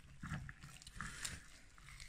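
Faint knife cutting through smoked pork knuckle on a wooden board, with a few soft clicks and scrapes about a quarter second and a second in.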